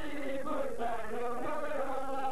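A man's voice chanting a sung religious recitation into a microphone, carried over a public-address system, the melodic line running without a break.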